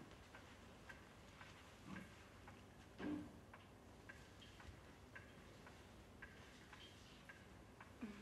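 Near silence with a clock ticking faintly and evenly, about two ticks a second. A soft low bump comes about two seconds in and a slightly louder one about a second later.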